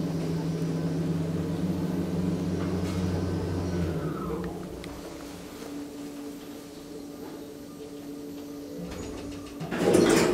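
Schindler Smart 002 machine-roomless traction elevator travelling. A steady motor hum falls away with a short descending whine about four seconds in as the car slows and levels at the floor. A quieter steady tone follows, and a loud clunk near the end as the door begins to open.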